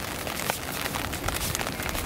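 Rain falling on a tarp overhead: a steady hiss made of many small drop ticks.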